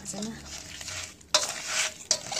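Raw fish pieces being mixed by hand in a stainless steel bowl: wet rubbing and squelching, with a sudden burst of scraping against the bowl about a second and a half in.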